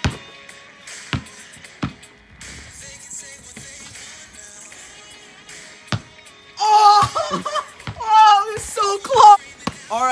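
Quiet background music with a few dull thumps in the first part, then loud, excited yelling by a group of young voices in the last few seconds.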